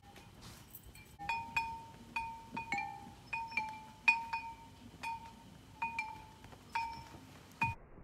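Small hanging metal bells, like a wind chime, ringing in irregular single and paired strikes at two to three a second. Each note rings briefly on one of a few close pitches.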